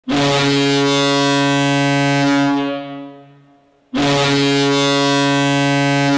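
Ice hockey arena goal horn sounding two long, steady low blasts. Each holds for about two and a half seconds, then fades. The second blast starts about four seconds in.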